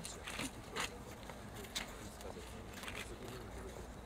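Scissors snipping through a fabric ribbon: a few short, sharp clicks spread over several seconds, over a low outdoor background with faint murmur.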